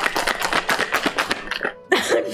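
Ice rattling hard inside a sealed metal cocktail shaker as it is shaken, a fast even clatter of strokes that stops briefly near the end.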